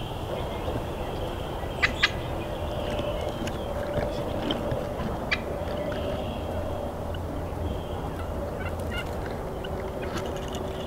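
Wild turkey calling, with a quick pair of sharp clicks about two seconds in and another just after five seconds.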